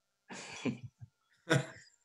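Laughter heard over a video call: two short, breathy bursts of laughing, one about a third of a second in and a sharper one about a second and a half in.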